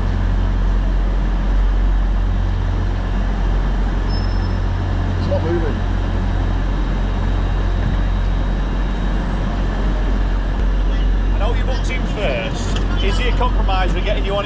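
A steady low hum and rumble from a train standing at a station platform, with distant voices.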